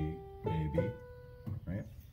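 Portable electronic keyboard played by a beginner: a few notes in the first second, the last held for about half a second before it fades, then a couple of softer notes.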